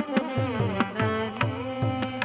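Carnatic classical vocal music: a woman singing a bending melodic line, accompanied by regular hand-drum strokes with deep pitched tones.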